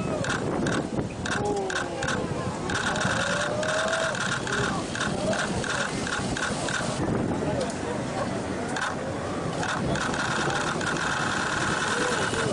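Excited shouting and whooping from people on a boat watching a surfer ride a huge barreling wave, over a steady rush of wind and water. A rapid chattering pulse comes and goes in the background.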